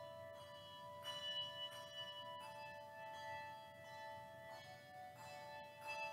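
Handbell choir ringing: bells struck one after another, each note ringing on and overlapping the next in a slow, sustained texture.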